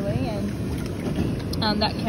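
Steady low rumble of wind on the microphone, broken by two short snatches of a voice, one near the start and one near the end.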